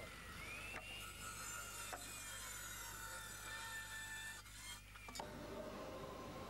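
Handheld electric circular saw cutting through a wooden board: a high whine that dips and rises in pitch as the blade works through the wood, stopping abruptly about five seconds in.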